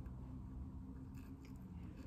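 Faint handling noise: a thin lanyard cord being pushed through the loop hole of a small plastic timer, with a few soft clicks and rubs, over a low room hum.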